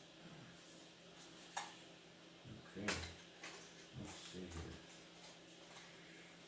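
Quiet handling of a cardboard deck box and trading cards on a playmat, with one sharp click. A man's voice makes two brief murmured sounds in the middle.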